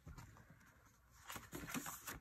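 Faint rustle and soft taps of a paper planner page being turned in a disc-bound planner, mostly in the second half.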